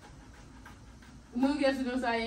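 A short lull with only faint room sound, then a person's voice starting about a second and a half in.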